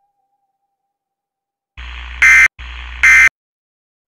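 Two loud electronic buzzer-like alarm blasts in quick succession, each getting louder near its end, after near silence.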